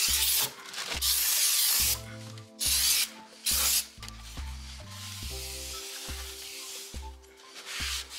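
Aerosol brake cleaner sprayed onto a new brake rotor in several bursts of hiss: the first ends about half a second in, the second lasts about a second, and two short ones follow around three seconds in.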